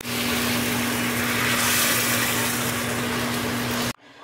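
A machine running steadily: an even rushing noise over a low, level hum, cutting in and out abruptly.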